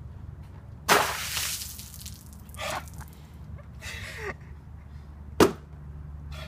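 Ice water dumped from a plastic tub over a person: a loud splash about a second in that dies away within a second, then a couple of shorter, softer sounds, and a sharp clack near the end as the plastic tub lands on the concrete.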